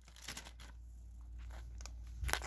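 Quiet room tone with a few faint clicks and rustles, like a tablet being handled as it is moved.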